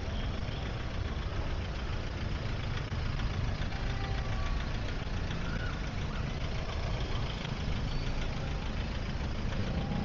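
Slow traffic jam of motorbikes, cars and pickup trucks idling and creeping along, a steady low engine rumble.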